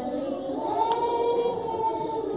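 A group of preschool children singing together, holding long notes, with a small click about a second in.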